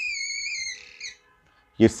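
Whiteboard marker squeaking against the board as a letter is written: one high, slightly wavering squeal for the first three-quarters of a second, then a short second squeak about a second in.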